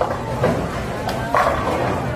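Bowling alley din: balls rolling and pins clattering, with a couple of sharp knocks and voices mixed in.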